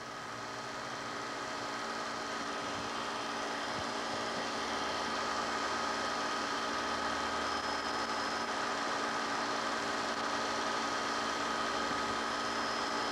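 A steady hum of several fixed tones over a hiss, swelling slightly over the first couple of seconds and then holding even.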